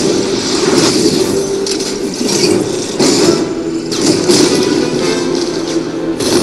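Action film soundtrack, with music and several crashes and impacts, played through an LED projector's small built-in speaker, which sounds thin.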